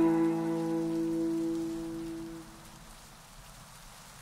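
Background music ending: a last sustained chord rings on and fades away over about two and a half seconds, leaving a faint steady hiss.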